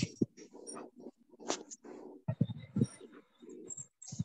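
A pigeon cooing in several short low bouts with pauses between them, heard over a phone-call line.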